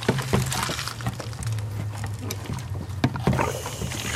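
Water from an outdoor hose spigot running into a plastic pump-sprayer jug as it fills, with a few light knocks of the jug being handled.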